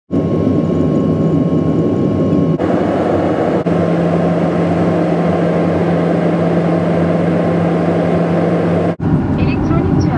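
Steady airliner cabin noise: the drone of the jet engines and rushing airflow heard from inside the cabin, with a low steady hum under it. The sound changes abruptly twice early on and drops out briefly near the end, where the clips are cut together.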